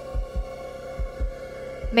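Background music of soft low bass thumps in pairs, like a heartbeat, about once a second, over a steady held drone.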